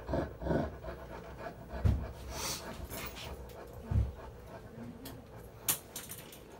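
Rottweiler panting and breathing hard, with a few dull thumps and one sharp click near the end.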